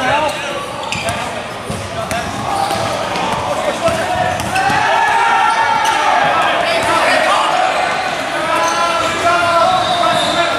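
Basketball bouncing and players' footfalls on a gym court during live play, with indistinct voices of players and spectators echoing in the large hall.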